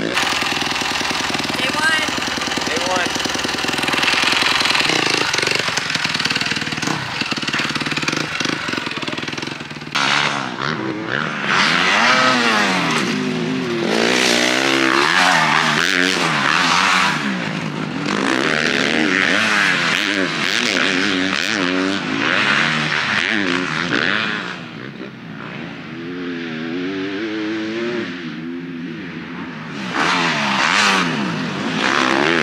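Kawasaki four-stroke motocross bike engine. For about the first ten seconds it runs fairly steadily with brief throttle blips. After that it revs up and down repeatedly as the bike is ridden round a dirt supercross track, its pitch rising and falling through the jumps and turns.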